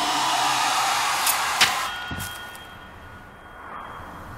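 Horror-trailer sound effects: a harsh, hissing creature scream lasting about two seconds, cut by two sharp hits near its end. After the scream, a faint high ring dies away.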